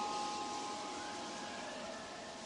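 Soft background score: several bell-like chime tones, struck just before, ring on and slowly fade over a faint hiss.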